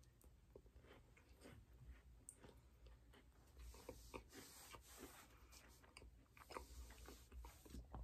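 Faint chewing of a crisp toasted Pop-Tart, with soft crunches and mouth clicks that come more often in the second half.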